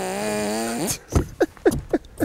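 A man laughing: one long held voiced note, then a few short, falling bursts of laughter in the second half.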